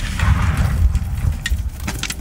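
Low rumble of an explosion set off at a car, fading away, with scattered clicks of debris coming down.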